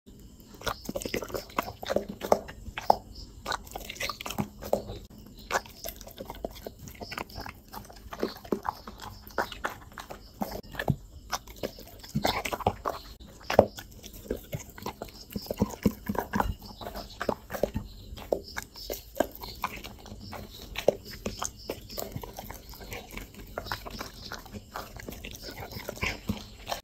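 Dog chewing and biting food: a run of irregular wet mouth smacks and teeth clicks, a few of them much louder than the rest.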